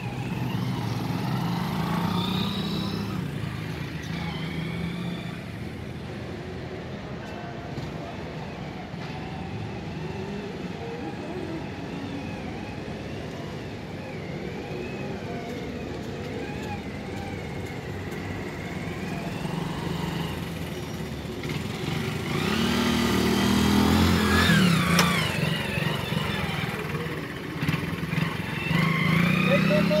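Small commuter motorcycle engine running at low speed on a riding-test course. It gets louder and rises in pitch about 23 seconds in as the bike passes close by.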